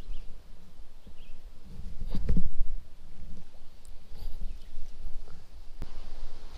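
Wind rumbling on an outdoor camera microphone, with rustling handling noise, a louder scuff about two seconds in and a short click near the end.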